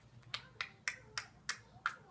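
Fingers snapping about six times in a steady rhythm, roughly three snaps a second.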